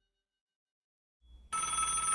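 Silence, then about one and a half seconds in a telephone starts ringing with a steady ring.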